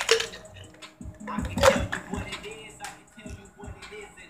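Plastic pop-top containers and vials knocking and clicking as they are picked up and moved about, a string of separate knocks with the strongest about one and a half seconds in. Faint music sounds underneath.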